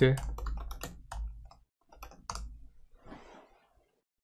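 Keystrokes on a computer keyboard as a terminal command is typed and entered: a quick run of taps in the first second and a half, then a couple more about two and a half seconds in.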